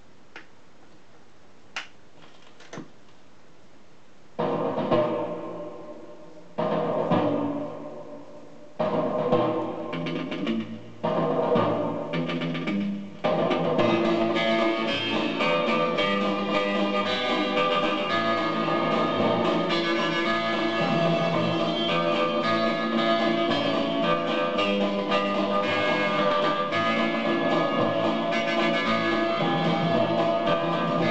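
Portable suitcase record player with a 7-inch single on the turntable: a few clicks as the stylus is set down, then instrumental music starts about four seconds in with four separate chords, each fading, before it plays on steadily from about thirteen seconds in.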